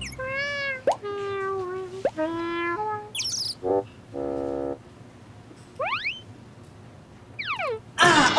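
Cartoon-style comedy sound effects: three held tones stepping down in pitch, each answered by a quick upward swoop, then a short buzz and a lower buzzy note. Near the end come whistle-like glides, rising and then falling.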